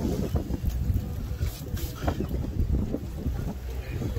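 Wind buffeting the microphone on a fishing boat: an uneven low rumble, with a few faint knocks.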